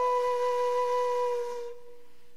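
A solo wind instrument holds one long, steady note that fades away near the end.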